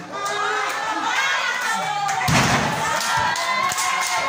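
A wrestler's body slamming onto the wrestling ring's canvas about two seconds in, one heavy thud, over a crowd with many children shouting and cheering.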